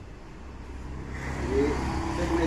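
A low engine hum that grows steadily louder.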